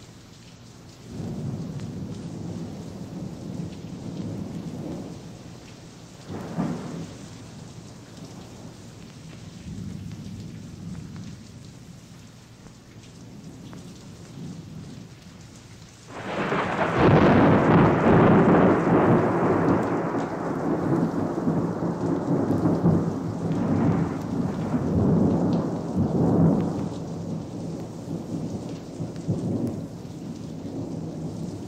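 Thunderstorm: steady rain with rolling thunder, small rumbles about a second in and again around six seconds. About halfway through, a sudden loud thunderclap breaks and rumbles on, slowly fading, with more rolls after it.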